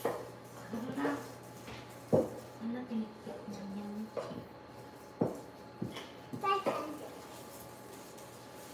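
Metal measuring cup scooping flour from a plastic flour container, giving a few light knocks against it, the sharpest about two seconds in. Quiet voices murmur in between.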